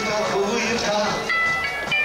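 Live rock band playing: a harmonica plays held notes over electric and acoustic guitars and drums.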